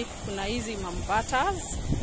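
A voice talking over wind buffeting the microphone, with a short hiss near the end.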